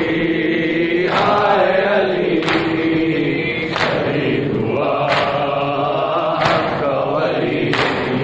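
A group of men chanting a mourning lament (noha) together, with rhythmic chest-beating (matam): six sharp slaps at an even pace, about one every 1.3 seconds, in time with the chant.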